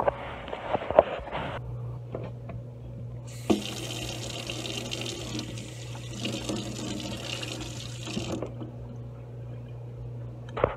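Tap water running from a faucet over a stained glass microscope slide held in the stream and into a stainless steel sink. The water starts about three seconds in and stops after about five seconds. Before it come a few sharp knocks, and a steady low hum runs underneath.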